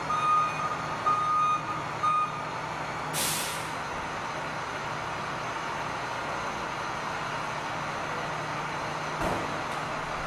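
Ambulance reversing alarm beeping three times, about once a second, then a short burst of hiss, with the ambulance's engine idling steadily underneath. A dull thump comes near the end.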